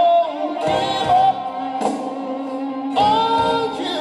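Male lead vocalist singing a soulful, gospel-tinged show-tune ballad over band accompaniment, holding long wavering notes.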